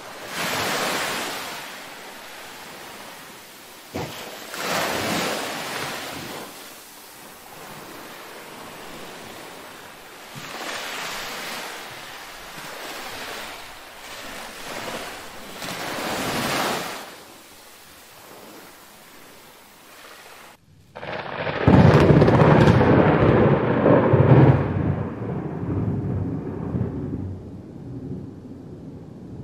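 Rushing noise that swells and fades four times, like surf or wind, then a louder, deeper rumble that sets in about three quarters of the way through.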